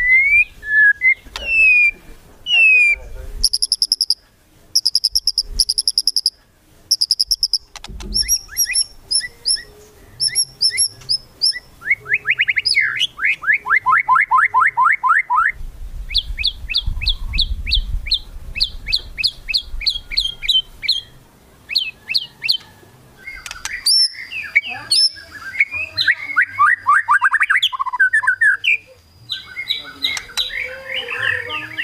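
White-rumped shama (murai batu) singing a loud, varied song: rising whistles, high paired notes and fast runs of rattling notes about ten a second. These runs are the kretekan, the rattling call bird keepers play to provoke rival shamas into singing.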